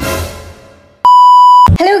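A musical note struck at the start and fading away over about half a second, then a loud, flat electronic beep lasting about half a second that cuts off suddenly; a woman's voice starts right at the end.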